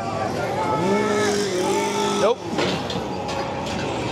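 A chainsaw engine running and revving, holding a steady high pitch for about a second in the middle, with a man's voice over it.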